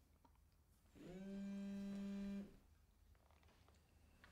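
A mobile phone vibrating on a wooden table: one steady buzz about a second and a half long, starting about a second in.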